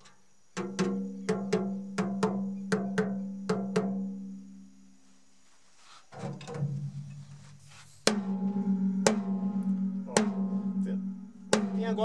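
8-inch acrylic tom tapped lightly over and over on its batter head while being tuned, each tap a short pitched ring. From about eight seconds in it is struck four times with a drumstick, about a second apart. The batter head has been slackened below a tighter resonant head, which cuts the drum's overlong ring.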